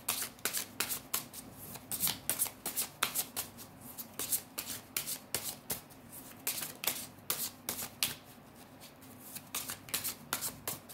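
Deck of cards shuffled by hand: a continuous run of quick, crisp card clicks, several a second.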